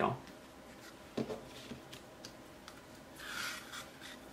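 String being pulled through a punched hole in a card-stock book cover, a short rasping rub near the end, with light paper handling and a few faint taps before it.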